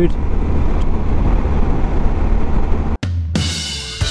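Wind and running noise from a BMW R1250 GS motorcycle at road speed, steady with no pitch changes. About three seconds in it cuts off suddenly and music with drums starts.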